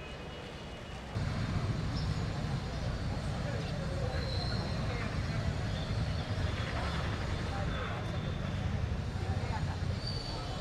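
Steady low rumble that grows louder about a second in, with indistinct voices and a few short high tones over it.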